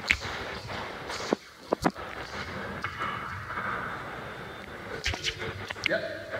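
Footsteps on a hard floor: a handful of sharp steps in the first two seconds and a few more near the end, over a steady background noise.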